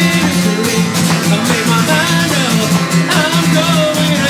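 Acoustic guitar strummed steadily while a man sings along, a live solo performance.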